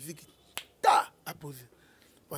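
Short non-word sounds from a man's voice between phrases. A sharp click comes about half a second in, then a loud short breathy burst just after, then a brief low voiced sound.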